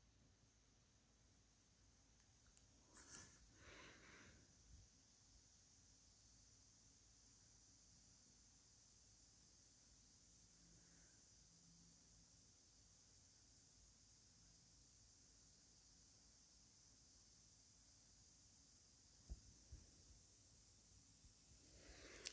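Near silence: faint room tone, with a brief soft noise about three seconds in and a faint click near the end.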